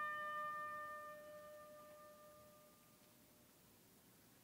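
Quiet orchestral music: a single held note from a solo woodwind, one clear pitch with its overtones, fading away about three seconds in.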